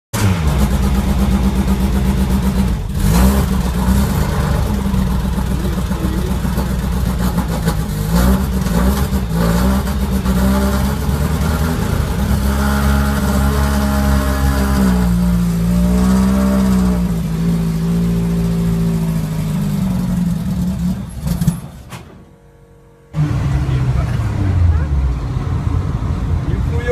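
Engine of a VAZ-2101 Zhiguli, billed as a powerful swap, running loudly through its exhaust, with its revs rising and falling several times. Near the end there is a brief lull, then the engine is heard again from inside the car with its revs falling.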